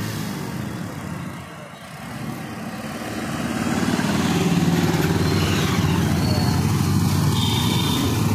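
Several motorcycle engines running, getting louder about halfway through as the bikes come closer, then holding steady.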